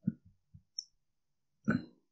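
A few faint, short clicks with silence between them, one at the start and a slightly longer one near the end.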